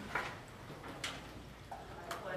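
A few short, faint clicks and knocks over quiet room hum as people get up from metal-framed chairs.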